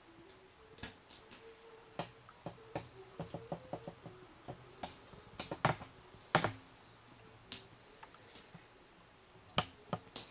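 Plastic Lego pieces clicking and snapping as they are handled, pulled off and pressed back on: scattered sharp clicks, a quick run of them about three seconds in, and the loudest two a little past halfway.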